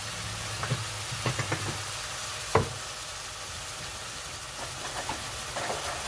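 Chopped onions frying and sizzling in a metal pan, with a steady hiss. A wooden spoon knocks and scrapes against the pan several times, the sharpest knock about two and a half seconds in.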